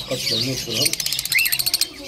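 Caged bird giving a rapid, high-pitched chatter for about a second, starting about halfway through, with one short gliding chirp in it.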